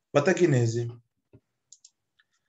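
A man's voice saying a short word or phrase for under a second, followed by three or four faint clicks.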